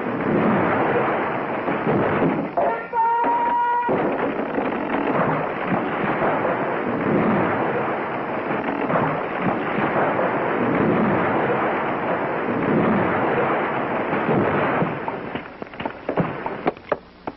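Tall forest trees crashing down, a long continuous rumble of breaking and crashing timber. About three seconds in, a short steady whistle sounds over it.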